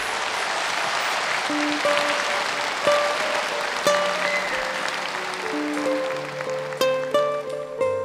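Audience applauding as the song ends, fading over several seconds, while soft plucked-string notes of a gentle instrumental come in over it and take over toward the end.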